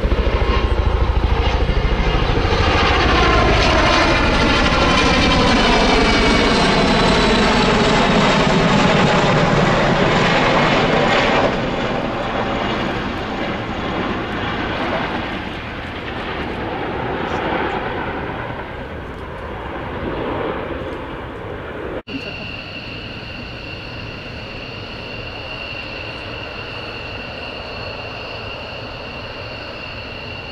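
Boeing CH-47 Chinook tandem-rotor helicopter flying past, loud, its engine and rotor sound falling in pitch, then dropping away suddenly about eleven seconds in and fading. About two-thirds of the way through, a sudden cut to a steady high whine of jet engines idling.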